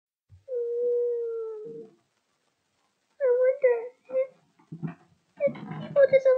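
A girl's high-pitched voice crying: one long, steady wail about a second long, then after a pause broken, tearful vocal sounds in the last few seconds.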